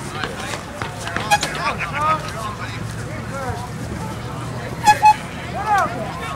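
Spectators chattering and calling out, many voices overlapping, with two short horn toots close together about five seconds in.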